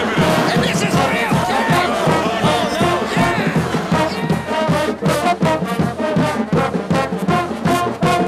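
Crowd yelling, then a marching band's brass and drums playing with a steady beat from about halfway through.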